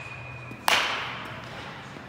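A baseball bat striking a ball once, a sharp crack about two-thirds of a second in that dies away over about a second.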